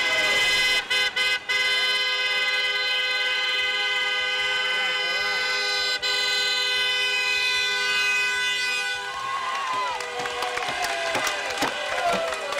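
Car horns of a celebratory convoy held down together in one long honking chord, broken briefly about a second in and again midway. In the last few seconds the horns thin out and people shout and cheer.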